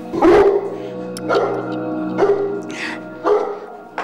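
Mastiff barking: four deep barks about a second apart, over background music.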